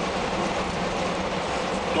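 Interior of a moving coach: a steady engine drone with road and tyre noise.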